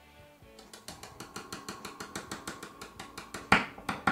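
Mini humbucker pickup of an electric bass being tapped with a metal screwdriver, heard through the amplifier as a rapid series of faint clicks, about eight a second, with a much louder tap near the end. This is the tap test, and the sound shows the pickup is working.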